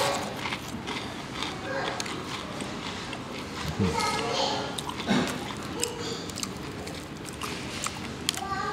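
Crackling and crunching of extra-crispy fried chicken coating as it is torn apart by hand and chewed, heard as many small, irregular crisp clicks. Voices murmur in the background.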